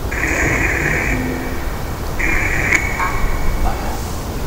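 Ghost box (spirit box) radio sweeping the bands, giving two bursts of hiss about a second long each, with faint broken radio sound between them.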